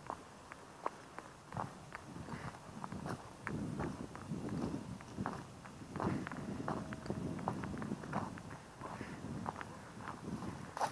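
Footsteps on broken brick rubble and dry grass: an uneven run of steps with sharp little clicks of loose debris underfoot.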